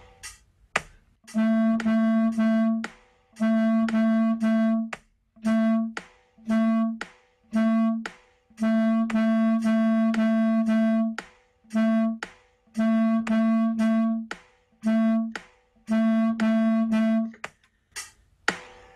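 Clarinet playing a rhythm exercise on one repeated note, short and longer notes broken by rests, over the steady clicks of a metronome. The clicks are heard from the start and the notes come in about a second and a half in.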